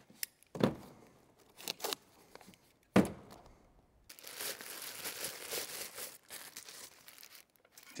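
A cardboard box being opened by hand: a few sharp clicks and knocks of the flaps and packaging, the loudest about three seconds in, then a few seconds of steady crinkling and rustling of packing material as the charger is pulled out.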